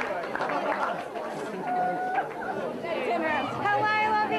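Crowd chatter: many people talking over one another, with a few voices raised above the rest near the end.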